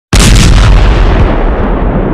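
A loud explosion-like blast sound effect that starts suddenly out of silence and holds, its hiss thinning as it goes on.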